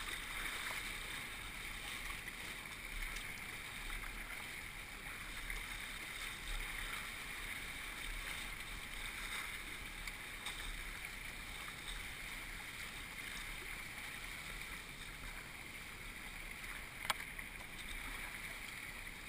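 River whitewater rushing and splashing around a whitewater kayak and its paddle blades as it runs a rapid: a steady wash of water noise, with one sharp knock near the end.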